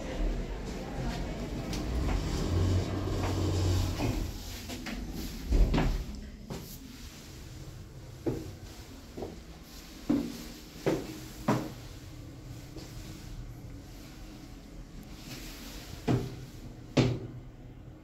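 Mitsubishi hydraulic elevator: the doors slide shut with a thud about five and a half seconds in, then the car rides down with a run of separate sharp knocks and clunks, the loudest two near the end.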